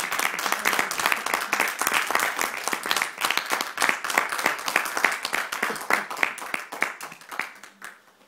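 Audience applauding, the dense clapping thinning out and stopping near the end.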